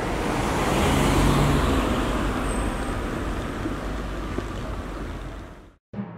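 Road traffic noise: the steady rush of a passing vehicle with a low engine hum, swelling in the first couple of seconds and then slowly dying away, fading out to silence just before the end.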